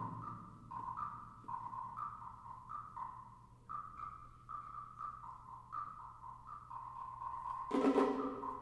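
Concert band playing softly: a quiet line of notes moving back and forth between two high pitches over a faint low held tone. Near the end more instruments come in louder.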